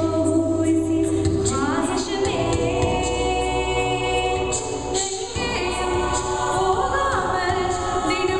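Mixed a cappella group singing a South Asian fusion arrangement of a Hindi-Tamil film song: held vocal chords over a low sung bass line, with a steady ticking beat on top. The chords thin out briefly about five seconds in, then come back in.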